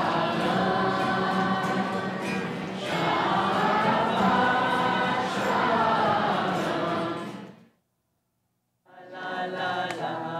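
A large group of teenagers singing a song together in one voice. It fades out about seven and a half seconds in, and after a second of silence another group's singing begins.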